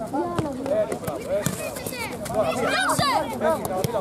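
Several children's voices shouting and calling over one another, with a few sharp knocks among them.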